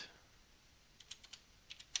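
Faint computer keyboard keystrokes in two short quick runs, about a second in and again near the end, typing a number into a field.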